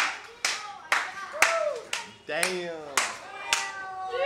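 Hand claps, about two a second, with short falling voice-like sounds between them.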